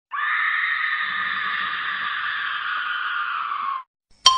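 A single long, held scream lasting nearly four seconds, its pitch sagging slightly toward the end before it cuts off suddenly.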